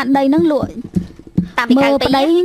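A woman talking in Khmer into a studio microphone, breaking off for under a second about a third of the way in, where a few soft clicks are heard before she speaks again.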